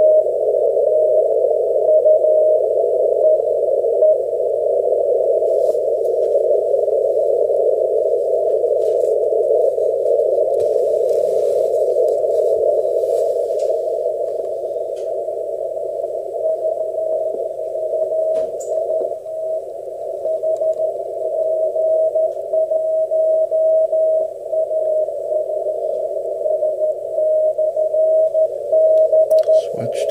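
Weak Morse code (CW) beacon keyed on and off just above a band of receiver hiss, heard through an Icom IC-7300 transceiver's 450 Hz CW filter. The keyed tone is plain for the first few seconds, sinks almost into the noise, then comes back clearer from about halfway on.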